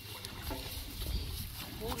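Faint voices talking, over a steady low rumble.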